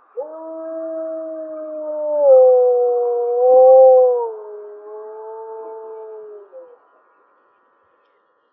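An adult male gray wolf howling: one long howl of about six and a half seconds that steps down in pitch twice and falls off at the end. The overtone an octave above the base pitch is louder than the base pitch itself, an uncommon quality in a wolf howl, and the howl is low-pitched for a wolf, which may come from the animal's large size.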